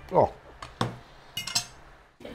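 A man's brief "Oh", then a metal fork clinking against a plate a few times.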